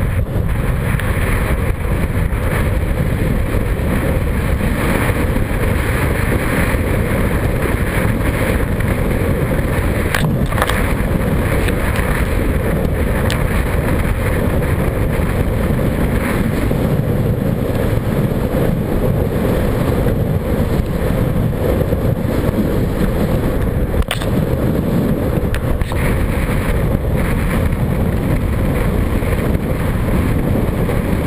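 Wind buffeting an action camera's microphone while a kiteboard planes fast over choppy water: a loud, steady rush with no let-up.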